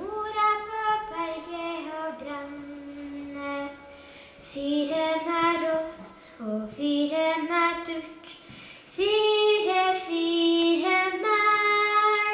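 A solo female voice singing stev, the unaccompanied Norwegian folk verse song, in held notes with short ornaments. The phrases break off briefly about four and eight seconds in, and the last phrase is the loudest.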